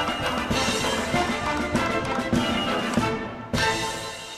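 Orchestral Russian folk-dance music with a strong percussive beat. It breaks off briefly about three seconds in, then ends on one loud final accent.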